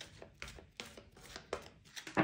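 A tarot deck shuffled by hand, the cards slapping together in soft, irregular taps, about three a second.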